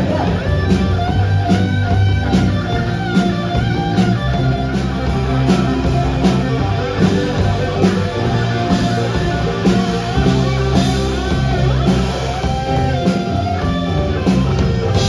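Live rock band playing an instrumental passage: electric guitars and electric bass over a drum kit keeping a steady beat.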